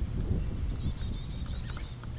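A small songbird sings about half a second in: a couple of falling high notes, then a quick run of a dozen or so repeated high notes lasting just over a second. Underneath runs a low steady hum from the mass of honeybees on the frame held up near the microphone.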